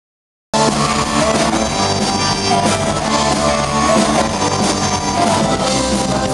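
Live rock band playing, with electric guitar and drum kit, cutting in abruptly about half a second in.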